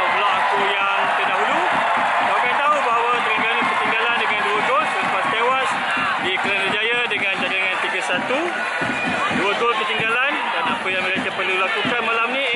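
A man talking close to the microphone over the steady noise of a large stadium crowd of football supporters.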